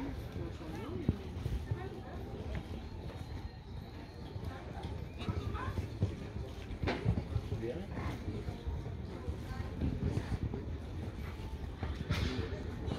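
Indistinct murmured voices of nearby people over a steady low rumble, with a few faint knocks.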